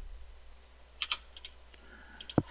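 Computer keyboard keystrokes: a quick run of four or five light clicks about a second in, as a modelling program's tool is switched and a value entered.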